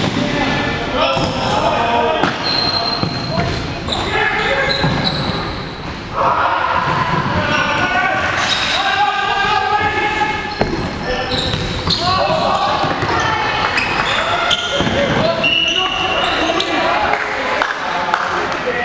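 Futsal match play in an echoing sports hall: the ball is kicked and knocks on the wooden court again and again, while players shout to each other.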